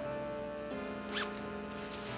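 Soft background music with held chords, and about a second in a brief rising rasp of a trouser zipper being undone.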